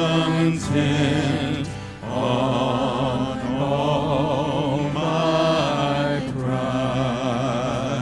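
A mixed vocal quartet, two men and two women, singing a worship song together in long held phrases with vibrato, over band accompaniment. The singing dips briefly about two seconds in and again near six seconds.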